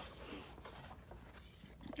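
Faint scraping and rustling of a cardboard toy box being handled as its inner tray is slid out, getting a little louder near the end.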